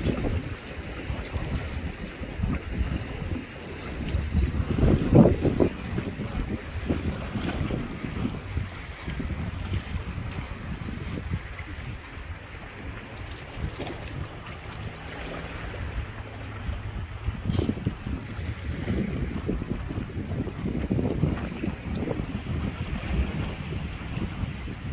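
Wind buffeting the microphone in gusts, with sea water washing in the background; one gust about five seconds in is the loudest, and a single sharp click comes a little past the middle.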